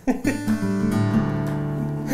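Lowden acoustic guitar: a chord is strummed and left to ring on steadily, after a brief bit of voice at the very start.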